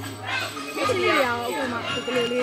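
Speech over faint background music.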